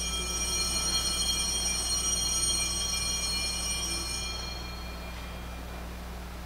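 Altar bell ringing at the elevation of the consecrated host: several high, clear tones that fade away over about four seconds, leaving a steady low hum.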